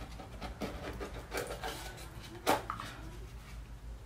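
Small white cardboard jewelry box being opened by hand: a run of short rubbing and scraping sounds as the lid is worked off, with one sharper, louder scrape about two and a half seconds in.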